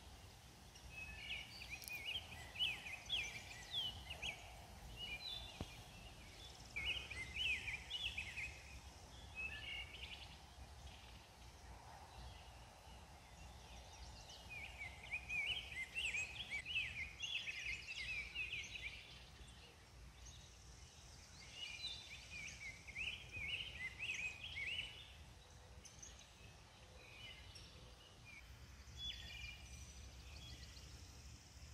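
A songbird singing in repeated phrases of quick, high notes, each lasting a few seconds with short pauses between, over a faint low background rumble.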